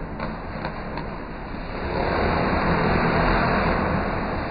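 Motorcycle engines running inside a steel-mesh globe of death, getting louder about halfway through.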